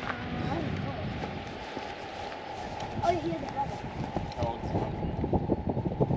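Footsteps of people walking over grassy, stony ground, with wind rumbling on the microphone; the steps come through more clearly in the second half.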